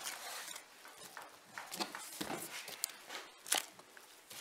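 Soft, scattered handling sounds: a scalpel and gloved hands working a deer's cape free of the skull, giving a few short clicks and scrapes, the sharpest one near the end.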